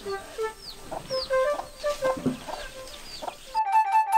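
Chicks peeping in quick, repeated falling cheeps, with hens clucking, over background music. About three and a half seconds in the farmyard sound cuts off, leaving a held music chord.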